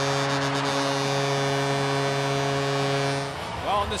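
Arena goal horn sounding one long, steady blast over a cheering crowd, cutting off a little after three seconds in; it marks the home team's overtime winning goal.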